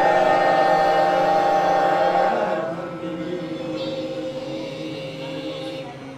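Chanted Quran recitation, a voice drawing out one long melodic note. It is strongest for the first two and a half seconds, then carries on more softly and fades near the end.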